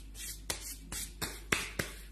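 A man's hands rubbing and knocking together close to the microphone: soft rustling broken by a few sharp clicks, the loudest about half a second in, about a second and a half in and near the end.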